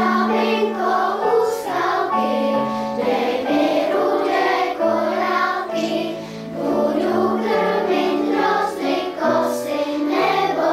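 Children's choir singing together in unison and parts, over a low accompaniment of long held notes that step from pitch to pitch.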